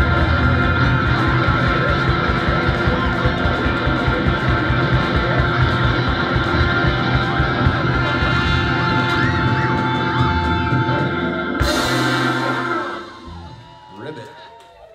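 Live rock band with electric guitar, drums and trumpet playing the instrumental ending of a song, finishing on a final cymbal crash about three-quarters of the way through that rings out and fades.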